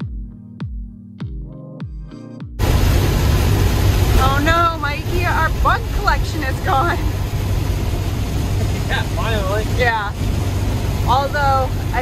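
Electronic music with deep, evenly spaced bass beats gives way about two and a half seconds in to loud, steady road and rain noise inside a motorhome cab driving through heavy rain. A voice is heard over it at times.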